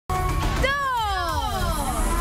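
Show music with a steady pulsing bass beat and held tones, and a long pitched sound that starts about half a second in and glides steadily down in pitch.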